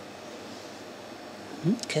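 A steady, even background hiss and hum of shop room noise, with no distinct events, then a man says "Okay" near the end.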